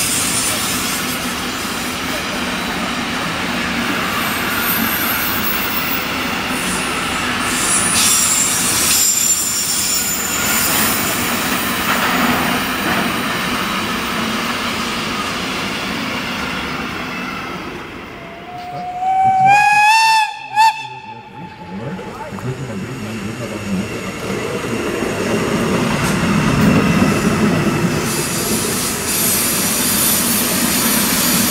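A freight train of container and tank wagons rolling past, steady wheel-on-rail noise with some high wheel squeal. About two-thirds of the way in a train horn sounds briefly, rising in pitch and then holding; afterwards the heavier rumble of a track-maintenance tamping train builds as it passes.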